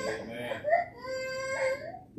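A young child whimpering and crying in short high-pitched cries, then a longer drawn-out cry in the second half.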